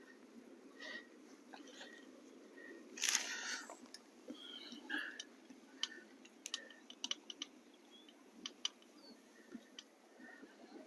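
Newspaper rustling briefly about three seconds in, then scattered small clicks and ticks as lugworm is threaded onto a fishing hook by hand, over a faint steady hiss.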